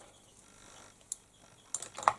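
A quiet pause broken by small sharp clicks, one about a second in and a few close together near the end. They fit makeup brushes or a palette being handled while one brush is swapped for another.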